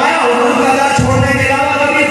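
Loud male speech, amplified through a microphone and PA in a large hall, delivered in a drawn-out, chant-like cadence.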